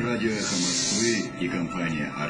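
A voice with a steady hiss of nearly a second starting about half a second in, as a radio broadcast goes into its break.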